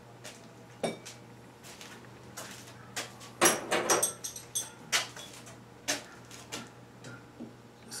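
Metal drill bits and tools clinking and clattering as they are handled and set down on a workbench: scattered knocks, with the loudest run of metallic rattling about three and a half seconds in.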